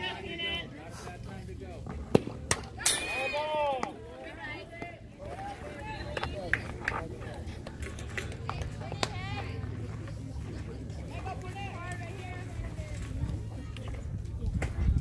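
A pitched softball smacks sharply into the catcher's mitt about two seconds in, followed by shouts from players and onlookers. Wind rumbles on the microphone throughout.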